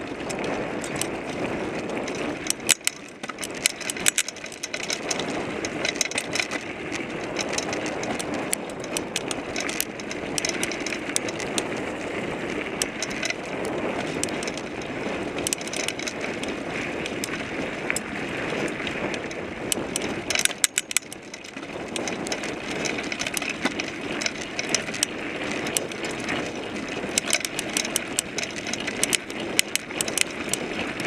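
Mountain bike riding over a dirt trail, picked up by a seatpost-mounted camera: steady noise of the knobby rear tyre rolling over dirt and leaves, with constant rattles and clicks from the bike over bumps. The noise eases briefly about two-thirds of the way through.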